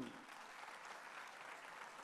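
Audience applauding: a steady, fairly faint patter of many hands clapping.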